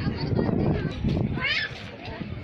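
Background voices of people talking, with a short, high, wavering cry about one and a half seconds in.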